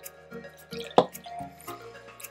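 Background music with a steady beat, over sauce being poured from a ceramic bowl onto fish fillets in a baking dish; a single sharp, loud splash-like sound about a second in.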